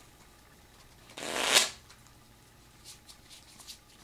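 A deck of plastic, narrow-index bridge-size J Design playing cards riffle-shuffled once: a short burr of cards about a second in that grows louder and stops sharply. A few faint clicks of the cards follow later.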